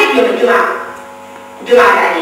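A woman speaking into a lectern microphone over a PA, her words trailing off in the room's echo, with a steady mains hum underneath.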